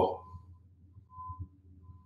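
The end of a man's spoken word, then quiet room tone with a low steady hum and a few faint, brief tones around the middle.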